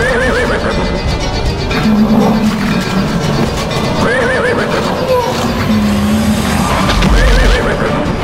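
Dramatic background score with a horse whinnying over it three times, the whinny and a held low note coming back in a regular cycle every three seconds or so.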